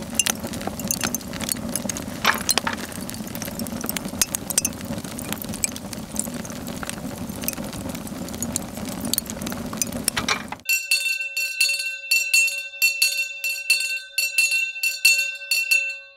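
Food sizzling and crackling on a barbecue grill for about ten and a half seconds, then a metal hand bell rung rapidly and repeatedly to call for attention for the last five seconds.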